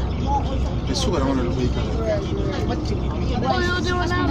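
Low, steady rumble of a moving stretch limousine heard from inside the cabin, under voices talking in the back; a voice rises into a held, pitched call near the end.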